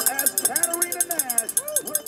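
Spectators shouting and cheering along the barriers, with a cowbell being shaken rapidly throughout.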